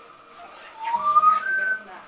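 A newborn puppy squealing: one high, rising cry about a second long, starting just before the middle and stepping up in pitch.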